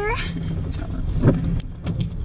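Car cabin noise while driving slowly on a gravel road: a steady low engine and tyre rumble with a few short crunches and knocks from the gravel.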